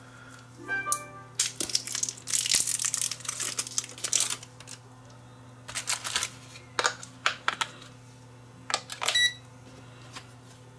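Plastic wrapping on a pair of AAA batteries crinkling as it is peeled off, followed by a run of clicks as the batteries are snapped into a multimeter's plastic battery compartment, over a steady low hum.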